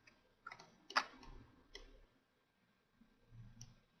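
A few faint, short clicks of a computer mouse button, the loudest about a second in.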